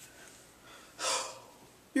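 A person's short, sharp intake of breath about a second in: a distressed gasp.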